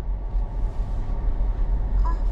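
Steady low rumble of an SUV heard from inside its cabin: engine and road noise with no other distinct event.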